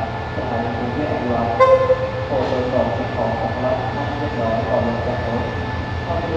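QSY-class diesel-electric locomotive running at the platform with a steady low engine drone, with one short horn toot about a second and a half in. People's voices go on underneath.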